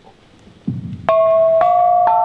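Seven-tone Javanese gamelan starting a piece: after a short hush comes a low drum stroke, then two ringing bronze strikes about a second in, their tones sustaining.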